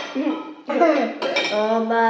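Cutlery clinking against plates and bowls at a family meal, with a child's voice over it from about halfway through.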